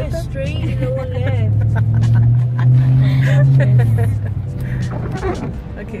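A car's engine and road noise heard from inside the cabin while driving slowly, a low hum that swells for a couple of seconds in the middle and then eases off.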